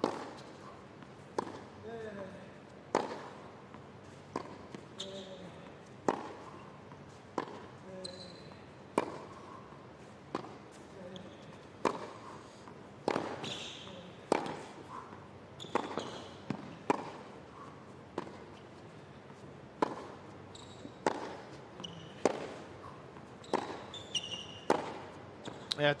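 A long tennis rally on a hard court: tennis balls struck back and forth with rackets, one sharp strike about every one and a half seconds, some twenty in all.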